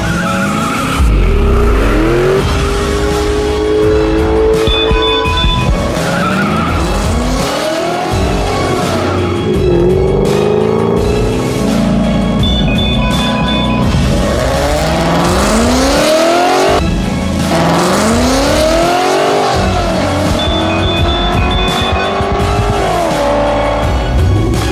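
Ford Mustang GT's 5.0-litre V8 accelerating hard, its pitch climbing several times and dropping back as it runs up through the gears, with some tyre squeal and background music.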